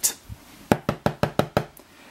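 A quick run of about eight light knocks, roughly seven a second.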